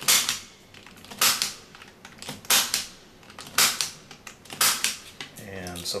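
Impact punch-down tool snapping five times, about one snap a second, as it seats and trims the conductors of a Cat5e/Cat6 cable into the insulation-displacement terminals of a patch panel.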